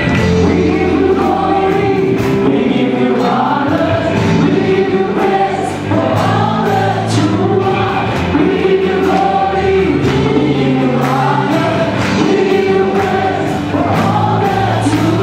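A small group of singers with a band (electric guitar and keyboard) performing a gospel song live through a PA system, with a steady beat.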